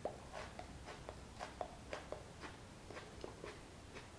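A person chewing pieces of a super-hot chili pepper with the mouth closed: faint, irregular mouth clicks, about three or four a second.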